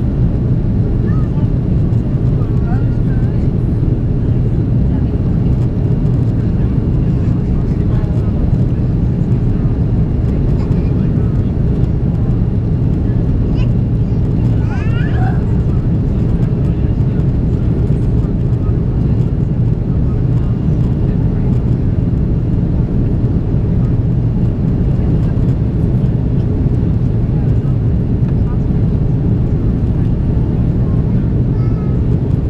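Airliner cabin noise inside an Airbus A330-343: a loud, steady, low rumble of its Rolls-Royce Trent 700 engines and the airflow over the fuselage, heard from a window seat over the wing.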